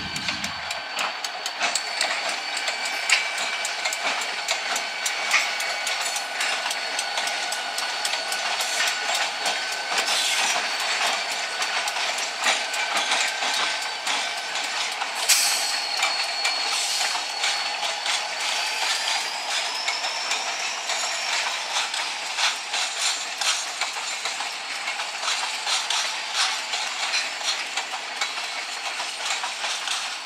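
Freight train rolling through a road crossing: locomotives and then a string of covered hopper cars passing, with a dense clatter of wheels on rail and a thin, wavering high squeal.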